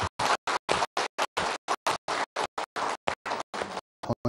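Audience applauding, stopping shortly before the end, with the sound cut into short pieces by many brief dropouts.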